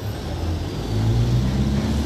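Low, steady engine rumble that grows a little louder about a second in.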